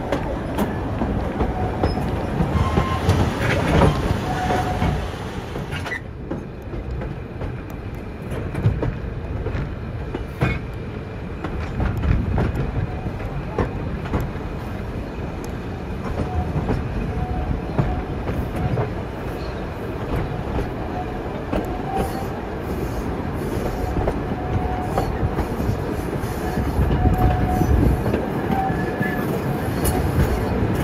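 Passenger carriages of a steam train running over jointed track, heard from an open carriage window: a steady rumble with wheels clattering over the rail joints. Brief high squeals from the wheel flanges recur several times as the train takes tight curves.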